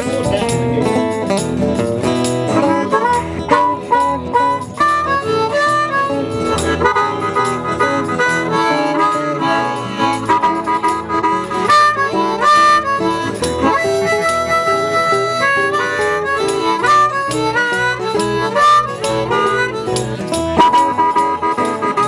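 Live band playing an instrumental break between verses of a country song, a lead melody of held notes running over the accompaniment.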